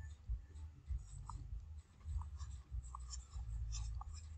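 Faint scratching and small ticks of a stylus handwriting a word on a tablet, over a low rumble.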